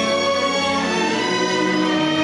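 Chamber string orchestra, violins, cellos and double basses, playing a classical piece with steady held bowed notes.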